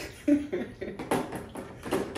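A few knocks and clatters from handling a plastic blender jar over a stainless steel strainer, ending as the jar is set back down on the blender base.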